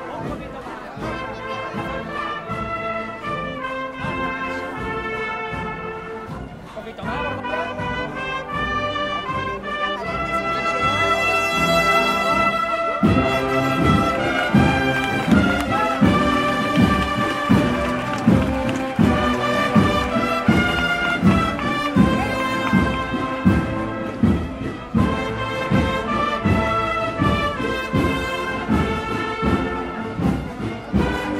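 Holy Week processional brass band playing a slow march, with held brass chords; about halfway through a slow, steady drum beat comes in and the music gets louder.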